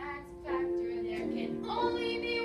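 Young female voices singing a musical-theatre song, holding long sustained notes, with a new, higher note entering near the end.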